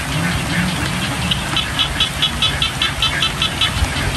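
Steady rain with a low rumble underneath. From about a second in, a rapid run of short high chirps, about five a second, stops near the end.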